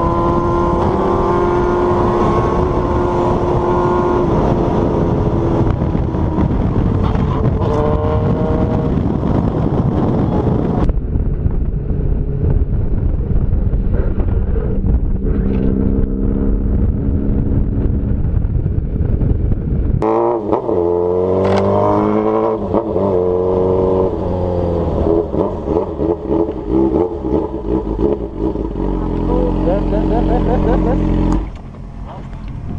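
Motorcycle engine running at road speed under heavy wind noise on a helmet camera, its pitch falling and rising as the rider changes speed. It turns quieter and duller about a third of the way in, then from about two-thirds in it revs up and down repeatedly.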